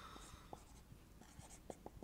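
Faint scratching and short squeaks of a marker pen writing on a whiteboard, in a string of quick separate pen strokes.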